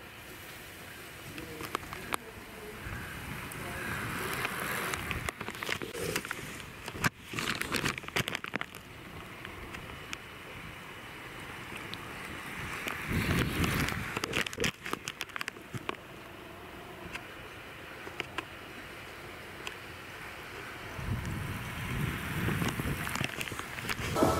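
Wind gusting over the microphone, with crackling buffets and low rumbles, as a road racing bicycle and a car go by.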